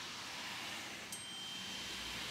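Quiet room tone with a faint steady hiss. There is a soft click about a second in, followed by a thin, faint high tone that holds to the end.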